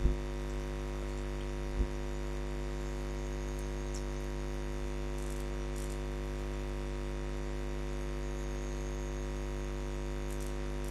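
Steady electrical mains hum with a faint hiss, and two soft low thumps, one right at the start and one just under two seconds in.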